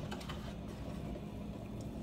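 Faint light clicks of a metal ladle against a stainless saucepan and the eggs in its water, over a steady low hum.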